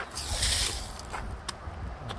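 A brief hissing scrape near the start, then a few light crunching steps on a gravelly dirt path, over a steady low rumble on the microphone.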